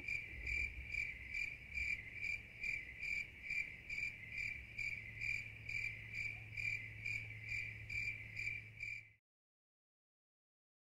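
Crickets chirping, a steady high trill pulsing about twice a second over a low hum, cut off abruptly near the end.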